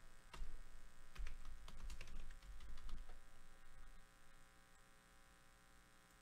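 Typing on a computer keyboard: a quick run of key clicks for about the first three seconds, then only a faint steady hum.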